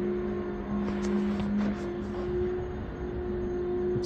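Engine-driven cleaning equipment running steadily, a constant machine hum holding two unchanging tones.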